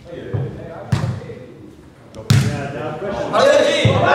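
Thuds of a football being kicked and bouncing on a hard floor in a large echoing hall, two sharp ones about a second and a half apart. Excited voices shout near the end.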